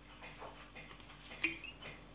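Quiet kitchen room tone with one faint, sharp click about one and a half seconds in.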